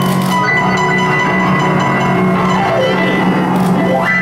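Upright piano played solo with both hands: dense sustained chords over a steady bass, with a fast descending run of notes in the second half.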